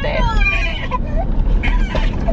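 A small child's high-pitched voice, with gliding, meow-like cries, over the steady low rumble of a car driving.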